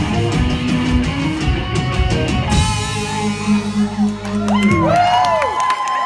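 Live rock band playing with electric guitars and a drum kit, closing the song on a held chord that cuts off about three-quarters of the way through. The audience then cheers and whoops.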